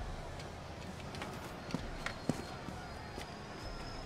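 Quiet background ambience: a steady low hum with a few faint, scattered clicks and knocks.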